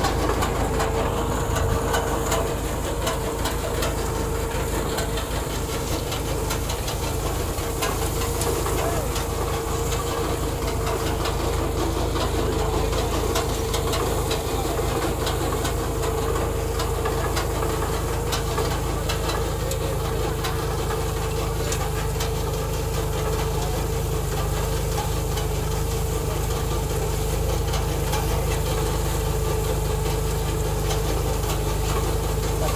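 Tractor engine running steadily under load while pulling a tractor-mounted groundnut digger, with a steady hum and a constant fine rattling from the digger as it lifts the plants and soil.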